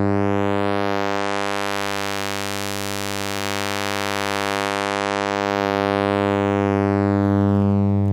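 A 100 Hz sawtooth tone through the ADE-20's analog two-pole band-pass filter at 25% resonance. The cutoff sweeps slowly up, so the tone brightens to a thin, buzzy peak a few seconds in, then sweeps back down and dulls again.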